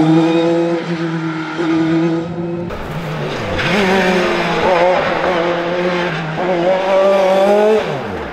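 Dallara F301 single-seater race car's engine under hard use, first held at high, steady revs. After a break the pitch dips and climbs again several times, then falls sharply near the end.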